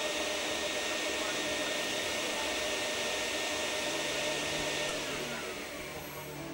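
Vacuum cleaner motor running steadily with a high whine. About five seconds in, the whine falls in pitch and the sound drops as the motor spins down after being switched off.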